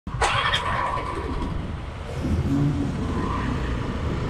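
Hero XPulse 200's single-cylinder engine idling at a traffic stop among idling scooters, a steady low rumble. A steady high tone lasting about a second sounds near the start.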